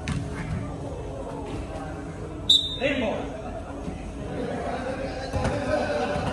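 Indoor five-a-side football play: a sharp thud of the ball being kicked, loudest about two and a half seconds in, with players' shouts and calls around it.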